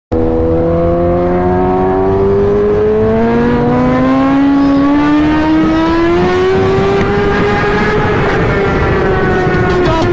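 Engines of a Suzuki GSX-R1000 sport motorcycle and a BMW M6 running side by side at speed, the engine note rising slowly for about seven seconds in a long pull, then levelling off.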